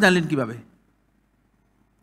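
A man's lecturing voice ends a phrase with a falling pitch in the first half second, then near silence.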